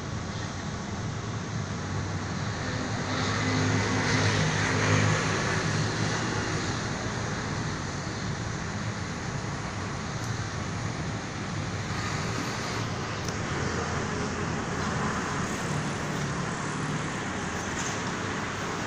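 Steady street traffic noise. A motor vehicle's engine grows louder and passes about three to six seconds in, and another engine passes faintly near the end.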